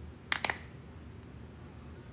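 Two or three sharp clicks in quick succession, about half a second in, over quiet room tone.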